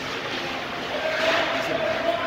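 A long drawn-out shout from a spectator at an ice hockey game, starting about halfway through and rising slowly in pitch, over the steady noise of the rink.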